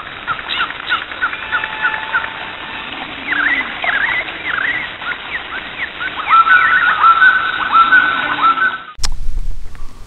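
Several birds chirping and calling in quick repeated phrases, cutting off suddenly about nine seconds in.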